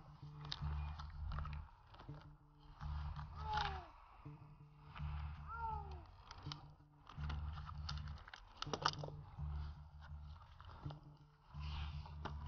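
Climbing spurs crunching into the dead cedar's bark and climbing gear working against the rope as a climber moves down the trunk, in bursts about every second and a half with sharp clicks. Two short falling squeaks come about a third and halfway through.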